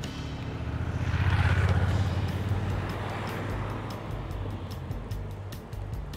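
A motorcycle passes close by, its engine sound swelling to a peak about a second and a half in and fading, over background music with a steady beat.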